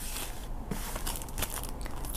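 Paper die-cut pieces and clear plastic sticker packs being handled on a work mat: an irregular run of crinkles, rustles and small ticks.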